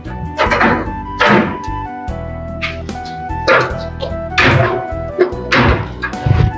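Background music with steady tones, over which an aerosol spray can hisses in several short bursts, and a few dull thumps sound in the second half.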